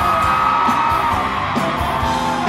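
Live pop-rock band playing at a concert, with one long high note held over the drums that slides down about one and a half seconds in.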